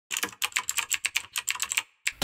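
Computer keyboard typing: a quick, even run of about fifteen keystrokes, some eight a second, that then stops.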